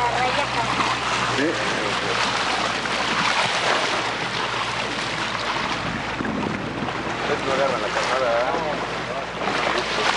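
Wind buffeting the microphone and water rushing past the hull of a small open boat under way at sea, a steady loud rush, with brief snatches of voices about a second and a half in and again near the end.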